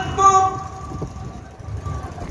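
A held note from recorded music over a loudspeaker sounds steadily at the end of a song and stops about half a second in. It leaves a lull of low room rumble before the next song.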